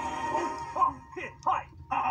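A TV programme's title music fades out, then three short yelping calls come about a third of a second apart, played through a television's speaker.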